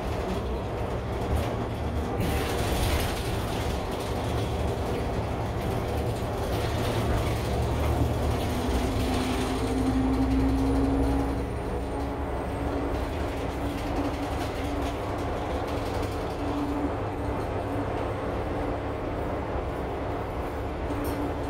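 A city bus driving, heard from inside the passenger cabin: a steady low engine and road rumble with rattles from the fittings. About eight seconds in, a drivetrain whine swells and grows louder, then drops back just after eleven seconds.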